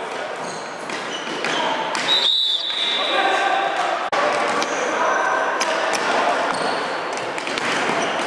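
Ball hockey play on a gym's hardwood floor: sticks and the ball knocking and clattering over and over, with players' voices echoing in the hall.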